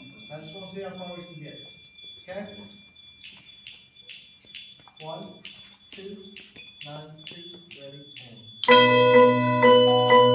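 Soft murmured talk and a run of light, evenly spaced ticks, then near the end a mallet-keyboard percussion ensemble led by marimbas comes in suddenly and loudly, playing ringing chords.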